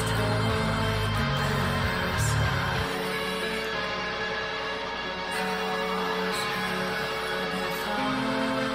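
A heavy metal band's song playing from a music video. A dense low bass part drops out about three seconds in, leaving sustained held tones.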